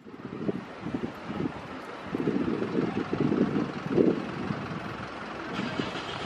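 Street ambience: a low, uneven rumble of traffic with wind buffeting the microphone.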